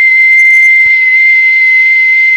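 A person whistling one steady, pure high note close into a small condenser microphone.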